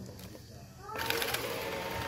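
Ecovacs Deebot robot vacuum starting up: about a second in, its motors spin up with a rising whine and then run with a steady whir and hiss.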